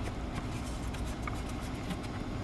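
Hands working a plastic wiring connector on the accelerator pedal position sensor, pressing its release tab: a few faint light ticks over a steady low background hum.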